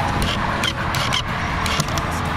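Several short, sharp clicks and knocks as the side panel of a painted plywood puzzle box is released and handled, over a steady rushing background noise.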